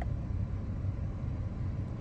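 Steady low rumble of a 2020 Nissan Versa's 1.6-litre four-cylinder engine idling, heard from inside the cabin.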